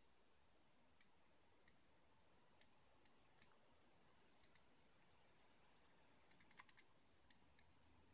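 Faint, scattered clicks from a computer being operated to page through photos, with a quick run of about six clicks about six seconds in.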